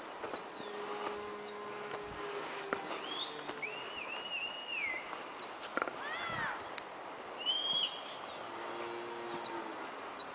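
Birds calling: short whistled chirps that glide up and down, with a longer wavering whistle about four seconds in and a brighter call just before the eight-second mark.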